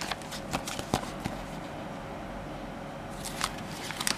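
Clear plastic sheet protectors and old paper envelopes rustling and crinkling as covers are slid in and out of the sleeves by hand: a flurry of crackles in the first second and a half, then again near the end.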